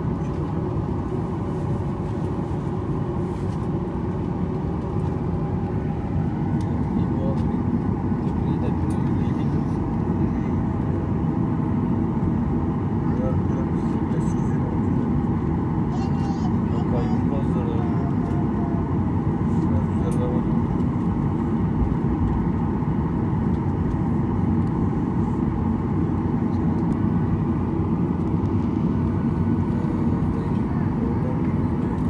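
Steady cabin noise of an airliner taxiing, heard from a window seat: the jet engines run at low power under a constant rumble, growing a little louder about six seconds in.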